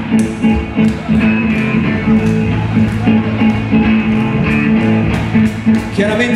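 Live blues band playing: electric guitars over a steady drum beat.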